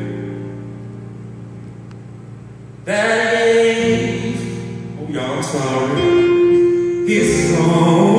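A man singing a slow gospel song to his own Roland electric keyboard. A held keyboard chord fades away over the first three seconds, then a new chord and the voice come in together and the singing carries on with long held notes.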